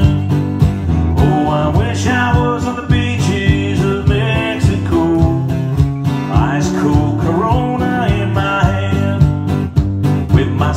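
Acoustic guitar strummed in an upbeat country song, over a steady kick-drum beat about twice a second from a foot-played drum.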